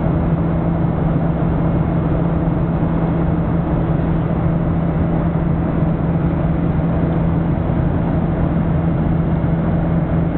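Steady cabin drone of a Boeing 737-800 in flight, its CFM56 turbofan engines and the rushing air heard from a seat beside the wing, with a strong low hum under an even rushing noise.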